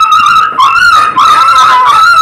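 Loud music: a wind instrument plays a high, wavering melody that moves in steps, with a rougher, noisier stretch about a second in.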